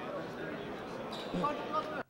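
Background hubbub of a large indoor hall: many people talking indistinctly at a distance, with a voice briefly standing out near the end.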